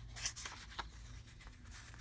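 Faint rustling of magazine pages being turned and handled, a few soft paper rustles over a low steady hum.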